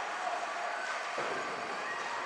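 Ice hockey rink ambience during play: a steady hiss of skates on the ice with faint, distant voices in the arena.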